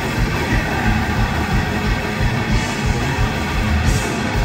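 Thrash metal band playing live: distorted electric guitars and bass over fast drumming, loud and steady throughout.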